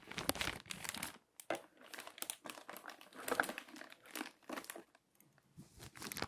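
Clear plastic sheet protectors and the paper prints inside them handled and shuffled by hand, crinkling in irregular bursts, with a short lull about five seconds in.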